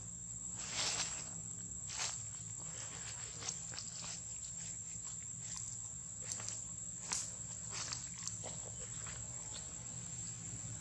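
Steady high-pitched insect drone, broken by a few short rustles of dry leaves about a second in, at two seconds and again around seven seconds.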